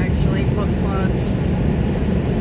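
Automatic car wash running, heard from inside the car: a steady low rumbling, rushing noise that does not let up.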